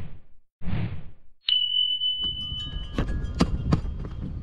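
Subscribe-button animation sound effects: a short whoosh, then a bright bell-like ding that rings for about a second and a half, followed by a few sharp clicks over a steady background noise.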